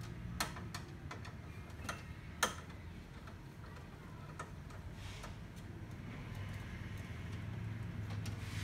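A long screwdriver clicking against the screws and metal side frame of a partly dismantled laser printer: a few sharp, irregular clicks, the loudest about two and a half seconds in, fewer in the second half.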